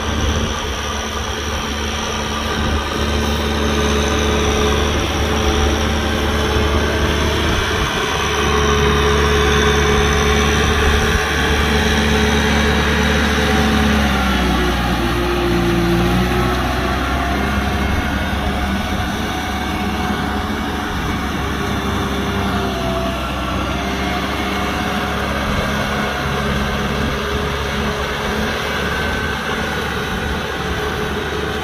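Kubota M6040 SU tractor's four-cylinder diesel engine running steadily under work. About halfway through its pitch sags for a couple of seconds and then picks back up.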